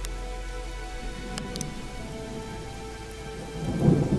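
Thunderstorm: rain with a low, steady rumble of thunder and a couple of sharp crackles about a second and a half in, under a faint sustained music drone.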